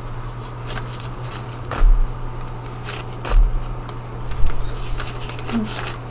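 Paper banknotes and a small paper envelope rustling and crinkling as bills are sorted and pushed into the envelope, with two dull thumps about two and three seconds in.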